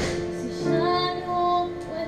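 Live music: a woman singing long held notes with violin accompaniment. A brief click right at the start.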